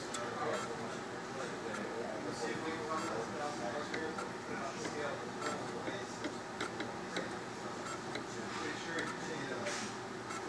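Thermo Microm HM 355S motorized microtome running, a steady mechanical hum with scattered light clicks.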